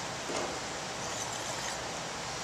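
Steady room hiss, with faint soft handling noise as a wine glass is lifted from the counter.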